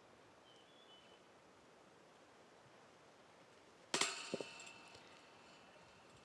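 A disc golf putt striking the metal basket low: one sharp clank with a short metallic ring about four seconds in, then a smaller knock as the disc drops out. The putt misses, thrown too low.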